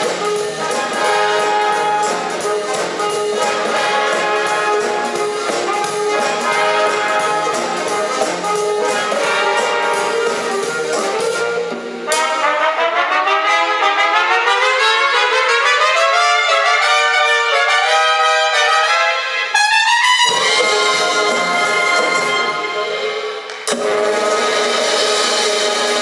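Concert big band playing a swing number, with saxophones, clarinets, trumpets, trombones and drum kit. About twelve seconds in the low instruments drop out and the upper instruments play a climbing passage. The full band comes back in about twenty seconds in.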